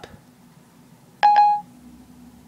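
iPhone 4S Siri chime: a single short electronic beep about a second in, the tone Siri plays when it stops listening and goes on to answer the spoken question.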